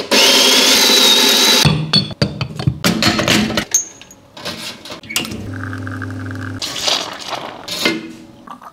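Quick-cut run of espresso-making sounds: an electric coffee grinder whirring with a rising whine for about a second and a half, then a series of clicks and knocks of metal and porcelain, then the espresso machine's pump humming steadily for about a second, and a short hiss near the end.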